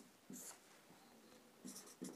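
Faint scratching of a marker pen writing on a whiteboard: a short stroke about a third of a second in, then a quick run of strokes near the end.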